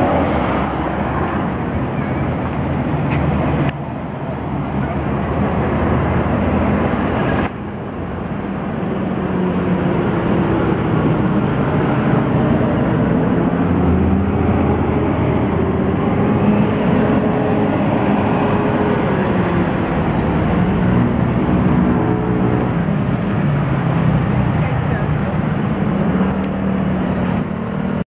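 City street ambience: traffic and motor engines running, with people's voices mixed in. The sound changes abruptly twice, about four and about seven and a half seconds in.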